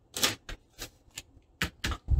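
Packaging being handled: a foam sheet set aside and loose plastic wrap over a paper letter crinkling under the hands, in about six brief rustles and taps.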